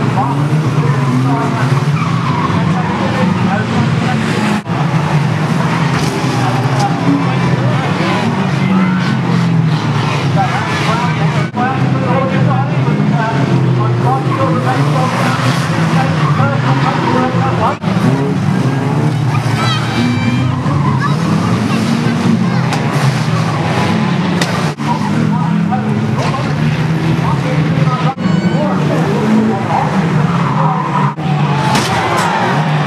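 Several banger racing cars' engines running and revving hard together, with tyres skidding on the loose track surface. A crowd's voices are mixed in.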